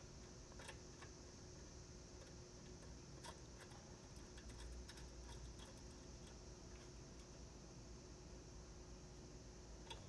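Near silence, with a few faint, scattered clicks of a hand socket driver tightening a small nut onto a ring terminal on the circuit breaker's post.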